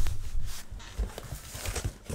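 Cardboard shipping box being handled and its flaps pulled open: irregular rustling and scraping of cardboard, with a few soft knocks.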